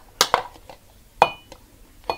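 A metal spoon knocking against a glass trifle bowl while banana slices are spooned in: two quick knocks, then a sharper clink a little over a second in that rings briefly.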